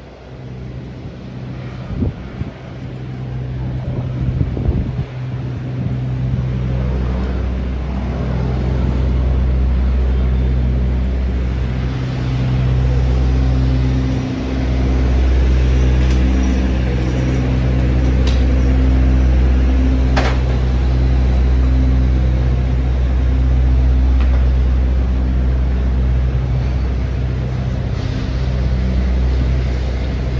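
Steady low engine hum of heavy road vehicles running in city street traffic, building up over the first few seconds, with one sharp click about two-thirds of the way through.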